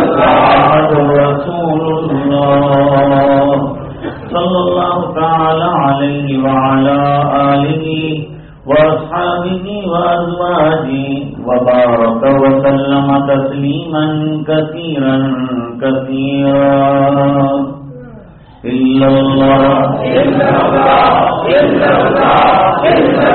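A man chanting Quranic verses in the melodic recitation style (tilawat), in long drawn-out phrases with short pauses for breath between them.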